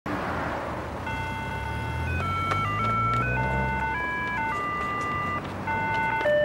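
Electronic pedestrian crossing signal playing a simple melody of clean, stepping beeps, with a car passing at the start.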